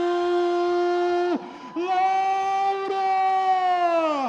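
A male ring announcer's voice calling out a fighter's name in two long held tones: the first held steady for over a second, then after a short break a second, slightly higher one held for about two seconds and dropping away at the end.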